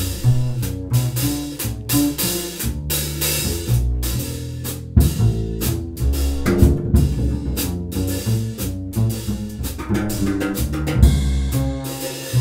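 Jazz piano trio playing an instrumental passage: piano chords over a bass line, with drum kit strokes and cymbals keeping a steady beat.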